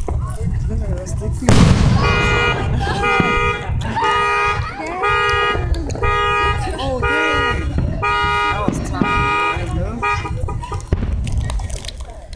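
A loud firework bang about one and a half seconds in, then a car alarm sounding a pulsed tone about once a second until near the end.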